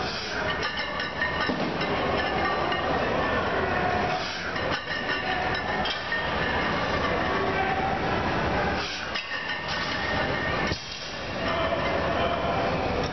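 Steady din of a busy weight room, with metal clinking and clattering of barbells and weight plates.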